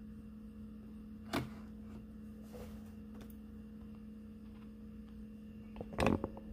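Quiet room tone with a steady low hum, and a single sharp click about a second and a half in.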